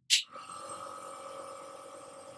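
Nebuliser air compressor switched on with a sharp click, then running with a steady hum as it pumps air to the medicine cup.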